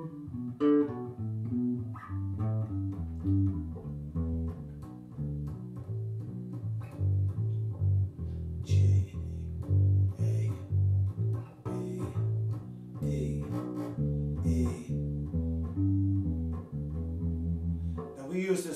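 Electric bass guitar played with the fingers, running the E blues scale up and down in triplets: a steady stream of short, low, evenly spaced notes.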